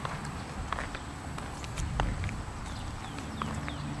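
A toddler's light, irregular footsteps in plastic sandals on asphalt, over a low steady outdoor rumble.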